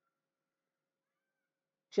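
Near silence: a gap in narration with no audible sound until a man's voice begins speaking right at the end.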